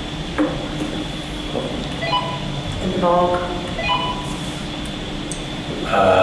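A few brief, faint snatches of a voice over a steady electrical hum and thin high whine, with a single click about half a second in.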